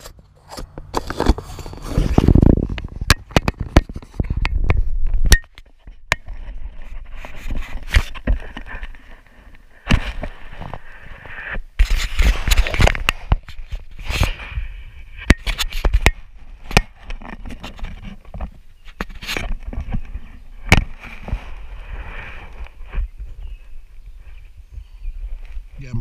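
Handling noise from an action camera in its plastic housing being fitted and strapped on: irregular clicks, knocks and scraping rubs against the camera. The rubbing is loudest in the first few seconds, then the sound turns to lighter scraping and rustling.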